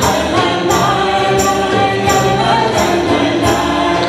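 A group of voices sings a song with musical accompaniment, and jingling percussion keeps the beat at about two strokes a second.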